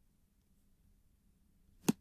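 Near silence, then a single sharp computer mouse click near the end.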